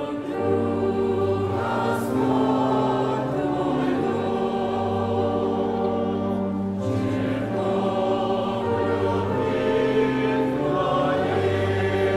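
A choir and congregation singing a hymn together, holding full chords that change every few seconds.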